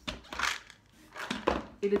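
Plastic supplement bottles being handled in a cardboard shipping box: rustling and scraping, then a lull, then more clatter ending in a sharp knock about one and a half seconds in.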